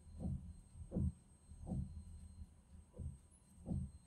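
Faint, dull low thumps, about five of them at uneven intervals of roughly two-thirds of a second, over a quiet background hiss.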